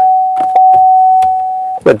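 A steady single-pitched electronic beep tone, held without a break and cutting off just before the end, with a couple of faint clicks about half a second in.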